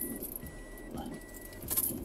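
Quiet car-cabin background with a faint high-pitched tone that sounds in short pieces of about half a second with brief gaps, and light metallic clinking, strongest near the end.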